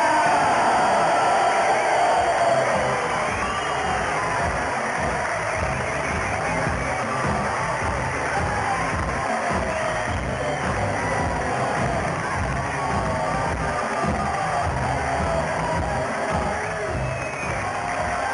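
Walk-on music with a steady beat playing over a crowd cheering.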